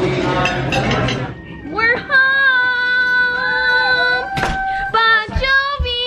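Restaurant chatter for about the first second, then a woman's voice singing long, high held notes with slight bends between them.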